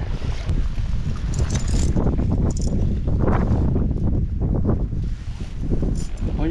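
Wind buffeting the microphone: a steady low rumble, with a few brief clicks from handling in the first half.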